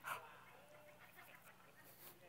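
Near silence: faint room tone, with one short breathy puff at the very start.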